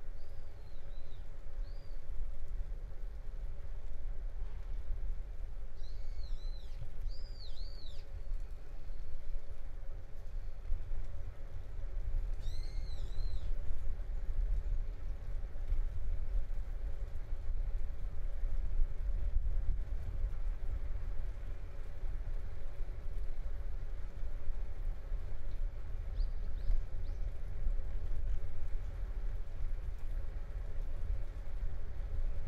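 A songbird calling in four short bursts of high, arched chirps: one near the start, one about six seconds in, one about twelve seconds in and one near the end. Under the calls runs a steady low outdoor rumble with a faint steady hum.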